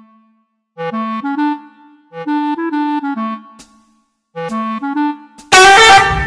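Background music: a short clarinet tune in three brief phrases of stepping notes, with pauses between them. Near the end a sudden loud burst of noise cuts in.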